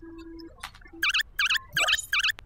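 Cartoon computer sound effects: a short low electronic beep, then from about halfway in a run of high warbling chirps, roughly two to three a second, as keys are pressed on the malfunctioning computer.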